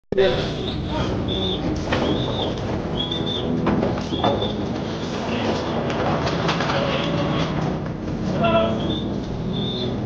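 Voices and steady yard noise in a cattle corral, with a short high chirp heard about six times.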